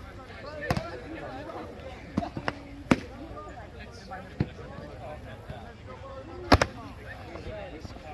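Foam-padded boffer swords striking round padded shields: a series of sharp knocks, about six, the loudest a quick double hit about six and a half seconds in. Background voices run underneath.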